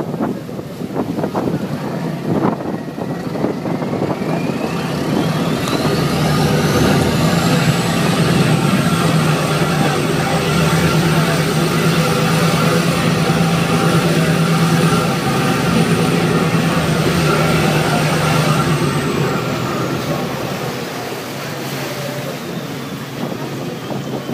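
A boat engine is run up under throttle. A steady low hum grows louder and a high whine climbs in pitch over a few seconds, holds high, then falls away near the end as the engine eases off. Wind and rushing water run beneath it.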